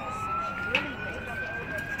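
A siren wailing: a single tone sliding slowly upward in pitch, over faint background voices.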